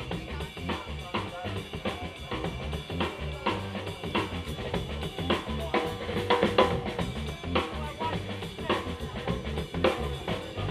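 Live funk band playing an instrumental stretch with no vocals: a steady drum-kit beat, bass drum and snare on the beat, over bass and keyboard.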